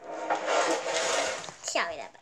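Rustling and handling noise from a handheld camera being moved close against fabric and hair, ending with a brief falling squeal.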